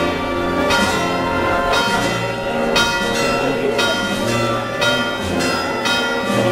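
Church bells ringing in a peal, with strikes coming about once a second and each ringing on into the next.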